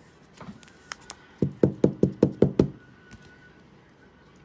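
A quick run of about seven knocks, roughly five a second, starting about a second and a half in, after two light clicks.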